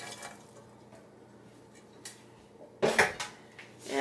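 The last Saskatoon berries patter softly into a stainless steel pot. About three seconds in comes one sharp, ringing clank of metal cookware, from the emptied steel bowl and pot.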